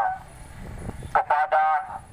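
A man's voice through a handheld megaphone, with little bass. A short phrase comes about a second in, after a brief pause.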